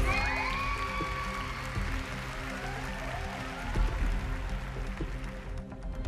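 Audience applauding with a few cheers, over steady background music; the applause thins out toward the end.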